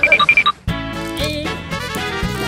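A quick run of high electronic beeps, like an alarm clock, for about half a second, then a brief drop-out and upbeat background music starts.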